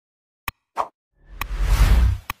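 Sound effects of an animated like-and-subscribe button: a sharp mouse click about half a second in, a short pop, another click, then a whoosh that swells with a deep rumble near the end.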